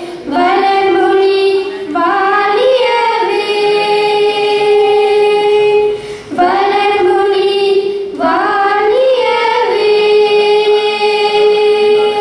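Two girls singing together into microphones, a slow melody of long held notes broken into phrases, with short breaths between phrases about 2, 6 and 8 seconds in.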